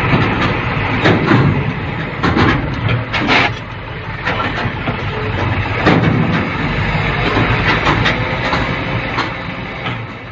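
Hino 500 hook-lift garbage truck's diesel engine running while its hydraulic arm holds the rubbish container tipped up, with irregular clattering knocks throughout.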